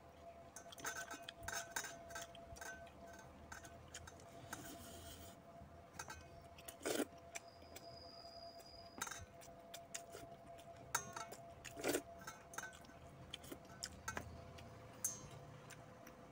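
Eating by hand from stainless steel bowls: frequent small clicks and scrapes of fingers and food against the steel, with two louder metallic clinks about seven and twelve seconds in. A faint steady tone runs underneath.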